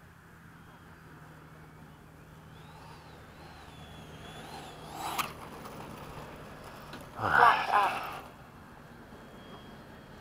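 Freewing 80 mm MiG-21 electric ducted-fan jet landing: a faint high fan whine that wavers in pitch, then a sharp knock about five seconds in. About seven seconds in, a loud burst of a person's voice lasting about a second.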